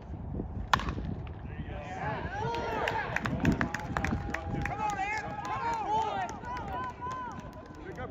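A baseball bat strikes the ball with one sharp crack about a second in, followed by several spectators shouting and cheering.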